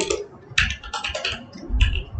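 Typing on a computer keyboard: a quick run of keystrokes about half a second in and another near the end, entering a short word.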